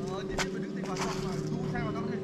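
Steady hum of a few held low pitches, typical of the bamboo flutes (sáo diều) on a Vietnamese kite flying in the wind, with faint voices over it.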